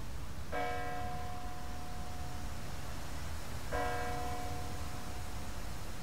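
A single bell tolling slowly, struck twice about three seconds apart, each stroke ringing on. A low steady rumble lies under it.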